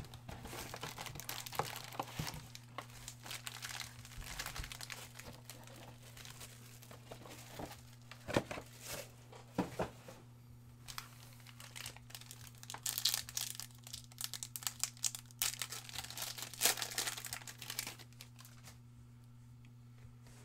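Foil wrappers of Panini Prizm basketball card packs crinkling and crackling as the packs are handled, in bursts of louder rustling, with a pack's foil torn open near the end.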